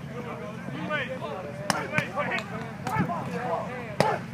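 Chatter and calls from players and coaches, broken by a few sharp smacks as linemen hit padded blocking dummies in a hitting drill.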